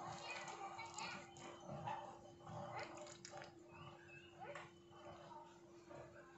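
Faint background voices and a dog barking, over a steady low hum.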